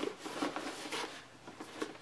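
Faint rustling of a tactical rifle bag's fabric being handled, with a few light clicks as its side pockets are opened and felt.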